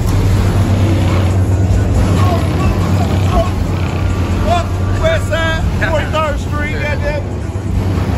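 Steady low rumble of idling car engines, with a person's voice calling out loudly in the middle.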